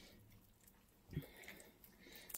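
Near silence, with one faint, short soft sound about a second in as a wooden spoon is stirred through thick rice jambalaya.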